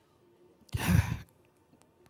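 A man sighing once, a breathy exhale lasting about half a second, a little under a second in.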